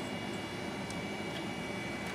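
Steady electrical and mechanical background hiss with a thin high whine, and a couple of faint clicks as the metal-mesh electronics case is handled.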